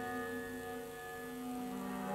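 Quiet instrumental music of held, droning notes, with an electric guitar played with a bow among them. A lower note swells in near the end.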